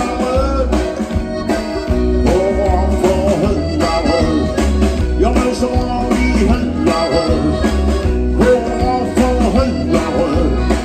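Live amplified band music: a man singing over drums, percussion, electric guitar, bass and keyboard.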